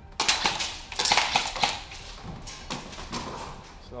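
A rapid string of shots from force-on-force training guns, starting about a quarter second in and running for about a second and a half, with a few more sharp cracks near three seconds.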